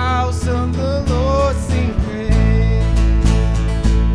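Live worship band playing a country-flavoured song: strummed acoustic guitars, drums and keyboard over a steady bass, with a wavering melody line on top.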